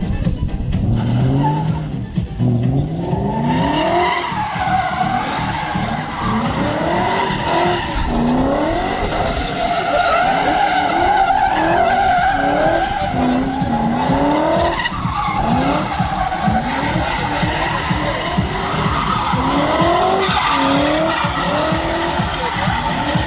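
BMW E39's V8 engine revving hard over and over, its pitch climbing with each rev, while the rear tyres spin and squeal through donuts from about four seconds in.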